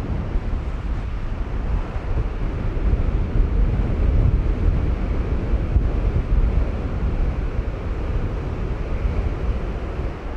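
Strong wind of about 25 knots buffeting the microphone in a steady low rush, with breaking surf behind it.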